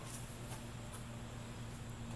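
Quiet room tone: a steady low hum under a faint, even hiss.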